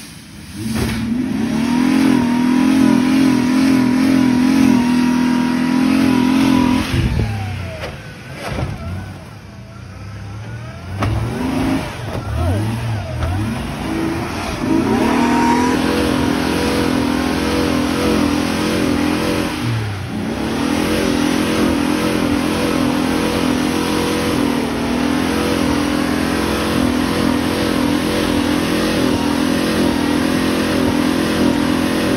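Ford Explorer's engine revving hard and held at high revs under heavy load as the SUV claws up a steep, rutted dirt climb. It eases off about a quarter of the way through, then revs hard again from about halfway and stays high to the end, with one brief dip.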